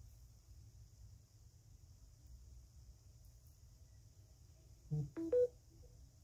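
A smartphone on charge gives a short chime of three quick tones about five seconds in. It is the noise it repeats about every two minutes while charging.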